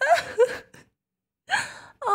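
A woman's short, breathy gasps: a cluster of them in the first second, then a pause and one more near the end.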